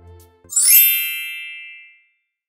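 A bright chime sound effect about half a second in: a quick shimmering sweep up into a bell-like ding that rings on and fades away over about a second and a half.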